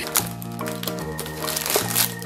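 Background music with a steady bass line, its notes changing about twice a second.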